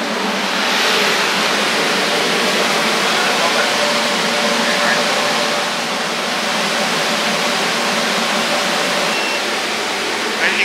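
Air-cleaning unit's fan running: a loud, even rush of air with a faint steady hum under it.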